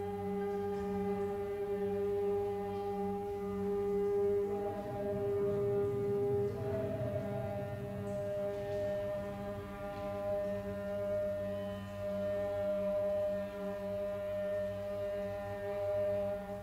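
Sustained, layered drone of experimental music, several steady tones held together. A tone shifts up in pitch about four and a half seconds in and again about six and a half seconds in, with a brief rush of noise between.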